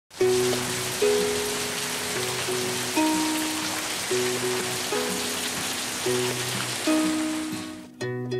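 Steady rain falling on leafy trees, a dense even hiss, under light plucked-string background music with a new note about every second. The rain cuts off right at the end.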